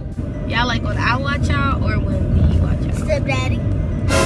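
Steady low rumble of a car's road and engine noise heard from inside the moving cabin, with a child's voice coming in briefly twice.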